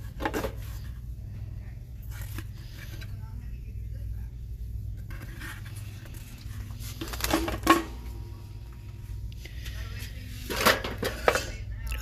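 Framed decorative signs clacking and rattling against wire store shelving as they are pulled out and handled, a few sharp knocks, the loudest a little past halfway. A steady low hum runs underneath.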